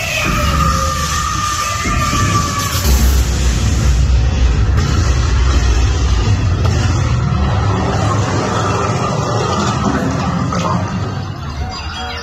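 Dark-ride show soundtrack: music and sound effects over a heavy, continuous low rumble. In the first few seconds a long tone slides slowly down in pitch.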